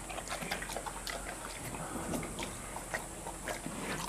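A bear eating grain porridge from a bowl, with irregular short chewing clicks and smacks.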